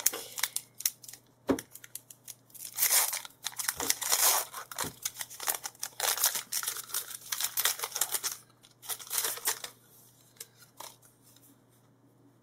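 Foil wrapper of a Pokémon trading card booster pack being torn open by hand: a run of crinkling rips starting about two and a half seconds in and dying away about two seconds before the end.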